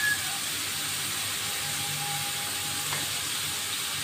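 Chopped onions sizzling in hot oil in a steel wok, a steady hiss, as they fry toward a reddish-brown colour.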